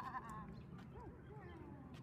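High-pitched wordless vocal sounds: a call carrying over from just before, a short rise-and-fall about halfway through, then a long call sliding down in pitch.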